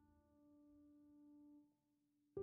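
Near silence: only the faint tail of a held note from background piano music, which dies away about three-quarters of the way through.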